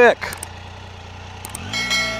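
Triumph Tiger 800XCx's inline three-cylinder engine running low and steady at walking pace, growing louder near the end.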